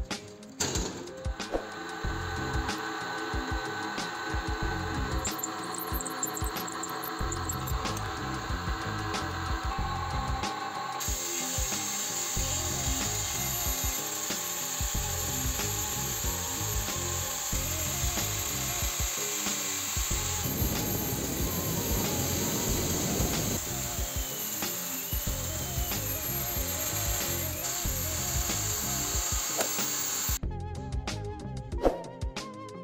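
Angle grinder grinding the end of a threaded steel vise screw that spins in a running drill press, a steady power-tool grind. About a third of the way in the sound turns brighter and more hissing.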